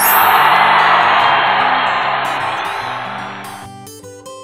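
A burst of crowd applause, added as a sound effect, starts suddenly and fades away over about three and a half seconds, over light background music.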